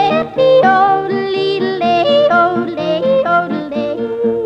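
A woman yodelling in a country song, her voice leaping back and forth between low and high notes, over a steady rhythmic accompaniment.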